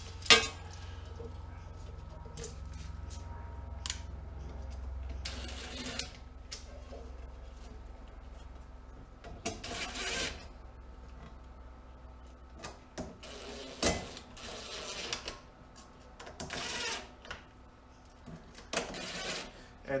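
Cordless drill-driver running in short bursts as it drives in the screws of a plastic inverter cover, with clicks and knocks from handling. A sharp click just after the start is the loudest sound.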